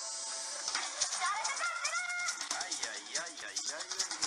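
Music mixed with voices from the soundtrack of a 1950s black-and-white television sitcom, over a steady hiss.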